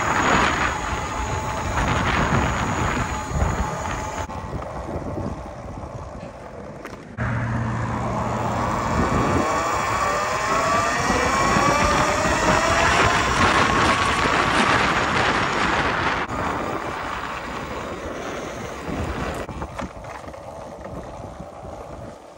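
Wind rushing over the microphone on a moving Talaria Sting R electric dirt bike. The motor's whine rises in pitch several times as the bike accelerates, about 9 to 15 seconds in. The sound changes abruptly a few times where sections are cut together.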